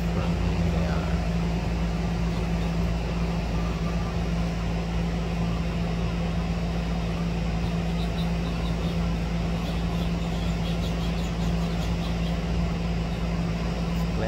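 A steady low mechanical hum at one constant pitch, with a deeper rumble under it, holding an even level throughout. Faint short high chirps come through around the middle.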